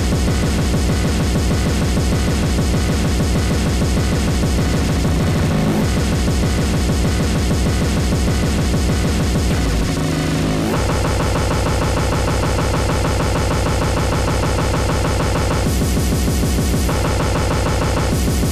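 Speedcore electronic music: a very fast, dense, harsh kick drum rhythm fills the mix, and its texture changes about ten seconds in.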